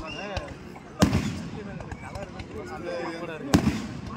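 A fireworks display with aerial shells bursting overhead: two loud bangs, about a second in and again about two and a half seconds later.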